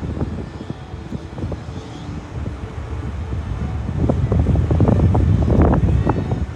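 Wind buffeting the microphone of a camera mounted on an open ride capsule: a low, uneven rush of gusts that grows louder about four seconds in.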